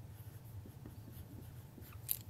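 A marker writing on a whiteboard, a run of faint short strokes.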